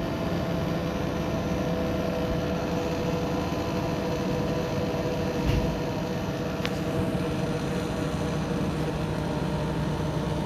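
Hotpoint NSWR843C front-loading washing machine in its final spin: the drum spinning at speed with a steady whir and hum that holds a few steady tones. A brief knock about five and a half seconds in.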